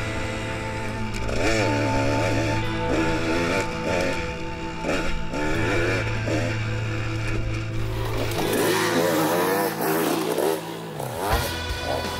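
KTM 200 XC-W two-stroke dirt bike engine revving up and easing off again and again while being ridden, with background music. Near the end the engine note drops away.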